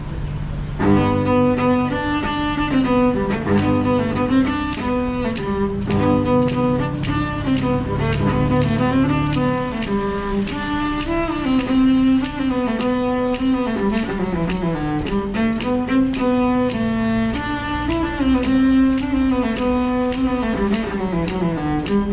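Cello bowed in a slow melody with vibrato over a steady low accompaniment. From about four seconds in, a bright jingling percussion beat joins at about two strokes a second.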